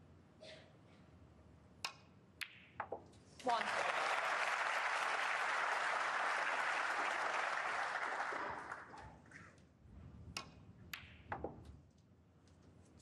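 Three sharp clicks of snooker balls being struck and colliding, then the crowd applauding for about five seconds as the red is potted, fading out. A few more ball clicks come near the end.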